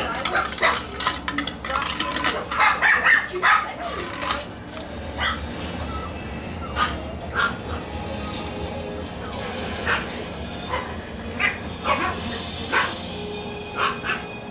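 Yorkie Tzu puppies (Yorkshire terrier and Shih Tzu cross) yipping and barking: a quick flurry in the first few seconds, then single short yips every second or two.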